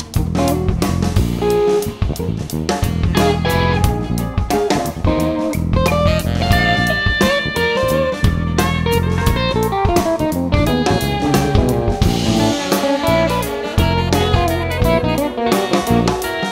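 Instrumental funk-rock band music: electric guitar over bass guitar and a drum kit, with a dense, steady groove and melodic lines that slide up and down in pitch.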